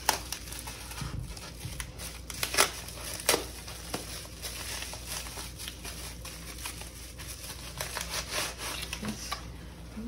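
Scissors snipping through a plastic bubble-wrap pouch, then the plastic and tissue paper crinkling and rustling as hands unwrap a small gift inside. A sharp snap right at the start and two louder snaps a few seconds in stand out over the crackling.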